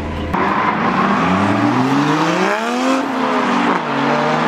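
Toyota JZX100 Chaser's straight-six engine revving up and then easing off as the car drifts through a corner, with tyre noise underneath.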